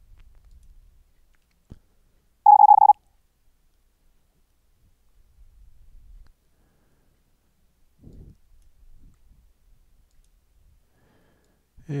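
One short burst of very high-speed Morse code, about half a second long: a whole word, which the user then copies as "purist", sent as a steady-pitched sine tone at 130 words per minute. The tone is regenerated by the sineCW plugin with shaped rise and fall. A faint click comes just before it.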